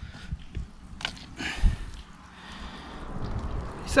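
Dry sticks being laid on a small wood fire in a stone hearth: a few knocks and clicks of wood against wood and stone, the loudest a dull thump about one and a half seconds in, followed by low rustling.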